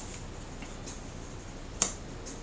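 A tarot card being laid down on a wooden tabletop: a couple of faint taps, then one sharp click near the end.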